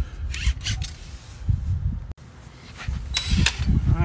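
Handling noise from a hand-held phone microphone: an uneven low rumble with a few short sharp clicks and rattles, around a second in and again near the end.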